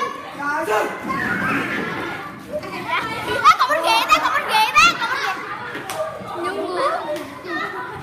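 A group of children laughing, squealing and chattering excitedly, with high-pitched shrieks of laughter around the middle.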